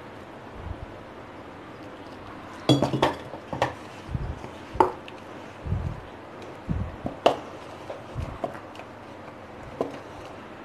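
A hand pressing and mixing soft maida dough in a stainless steel bowl, which knocks and clinks irregularly with soft low thumps, starting about three seconds in.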